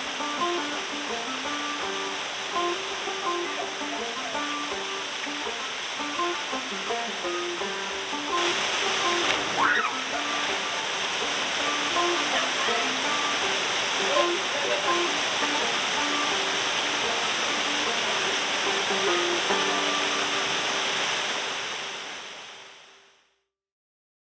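Small waterfall pouring steadily into a rock pool, with a light background melody of short notes over it. The water gets a little louder about eight seconds in, and both fade out shortly before the end.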